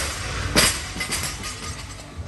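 Dropped barbell with bumper plates bouncing on the gym floor: a clatter about half a second in, then smaller metallic rattles from the bar and plates settling, over loud gym music.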